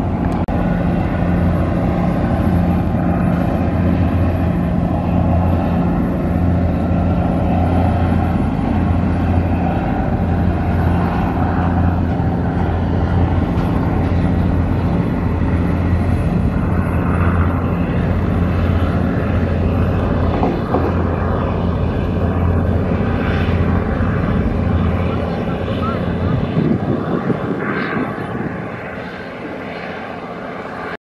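Engines of a large passenger river launch running at speed, a steady low drone with the rush of its bow wave. The drone fades in the last few seconds as the vessel passes by.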